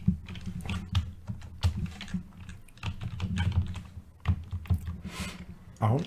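Computer keyboard typing: irregular key clicks as a word is typed and a typo corrected.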